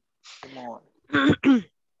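A woman clearing her throat: a soft rasp, then two short, louder ahems about a second in.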